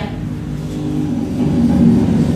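A motor vehicle's engine running with a steady low hum, slowly growing louder.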